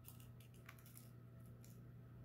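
Faint, scattered light clicks of small plastic diamond-painting drills being swept and picked up with a clean-up tool and knocked into a clear plastic box, over a low steady hum.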